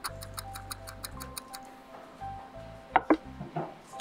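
Background music with a ticking-clock sound effect, about five quick ticks a second, that stops a little over one and a half seconds in. Two sharp knocks sound close together about three seconds in.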